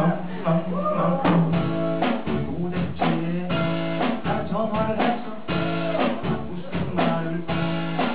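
A live band playing a song with drum kit and acoustic guitar, and singing over it. The drum beat picks up about a second in.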